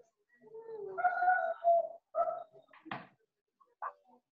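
A bird cooing, heard faintly over a video-call microphone: a few low hooting notes in the first half, then two short taps near the end.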